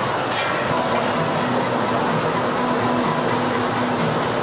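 Steady, loud roar of a glassblowing glory hole's gas burner running at working heat.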